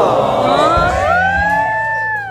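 A woman singing into a microphone through a PA. She holds one long high note that slides up about halfway through and then stays steady.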